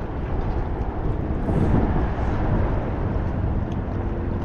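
Wind rumbling on the microphone over a steady hiss of road traffic, swelling a little about halfway through.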